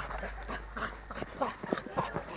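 Short whimpering cries from a voice, several in quick succession in the second half.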